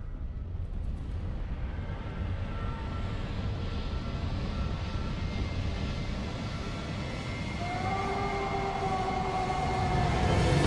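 A low, rumbling swell of film-trailer sound design that builds steadily, with sustained tones coming in about eight seconds in.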